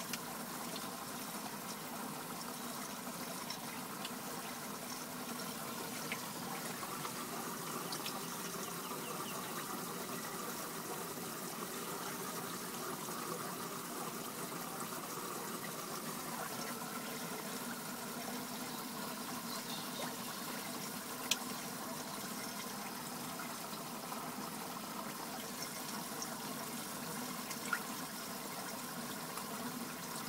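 Water steadily trickling and splashing into a fish tank, with a couple of brief clicks near the end.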